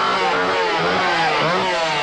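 Two-stroke chainsaw engine revving, its pitch rising and falling repeatedly.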